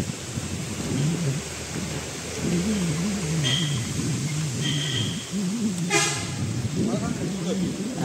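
Indistinct voices talking, with two short high-pitched beeps a little after the middle and a sharp click about six seconds in.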